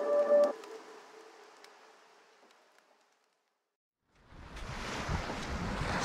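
Background music cuts off about half a second in and fades away to silence. About four seconds in, outdoor beach noise of wind and surf comes up, with a low rumble on the microphone.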